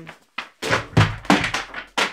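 A run of thuds and paper rustles as a pair of glossy magazines is handled and put down, the heaviest thud about a second in.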